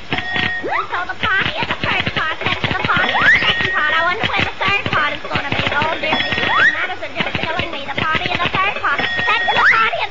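Old cartoon soundtrack: fast, unintelligible squeaky chatter with a rising whistle-like glide about every three seconds.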